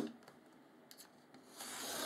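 Snap-off utility knife cutting board along a steel ruler. A short knock comes first, then a few faint ticks, then a dry scraping stroke of the blade through the board that builds from about one and a half seconds in.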